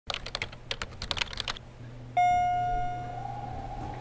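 A quick, uneven run of sharp, keyboard-like clicks for about a second and a half. About two seconds in comes a single bell-like ding that rings on and slowly fades.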